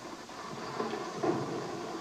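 A Bell UH-1 Huey helicopter hovering low, its engine and rotors making a steady rumbling noise.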